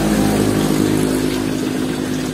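A steady, even-pitched motor hum, easing slightly in level, with water sloshing as a hand moves through a tub of koi.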